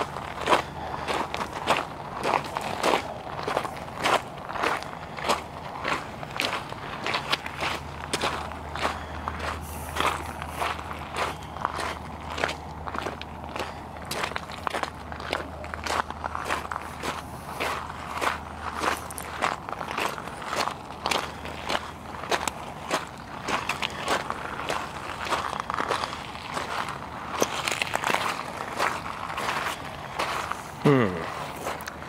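Footsteps crunching on beach gravel and pebbles at a steady walking pace, about two steps a second.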